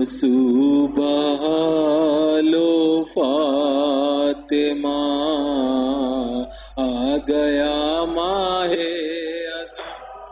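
A man chanting a noha, a Muharram mourning lament, into a microphone, in long wavering held notes with short breaks for breath.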